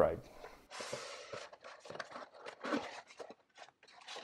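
Hands handling a cardboard box and its packaging, with irregular rustling, scraping and small taps.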